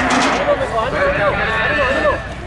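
People talking, several voices overlapping.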